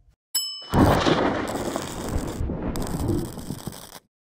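Outro sound effects: a short bell-like ding, then a loud, noisy crash-like effect that lasts about three seconds and cuts off suddenly.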